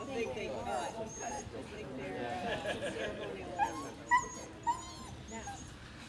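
Indistinct chatter of a gathered crowd, with a dog giving three short, high yips between about three and a half and five seconds in.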